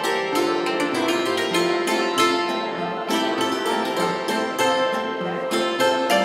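Several zithers playing Alpine folk music together (Saitenmusi), a steady stream of plucked melody notes over a lower accompaniment.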